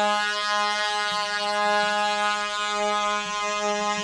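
A low, steady musical drone on one pitch, rich in overtones and foghorn-like, opening the track.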